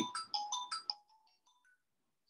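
A short electronic chime, like a phone ringtone or notification tone: a quick run of about six bright notes in the first second, fading out.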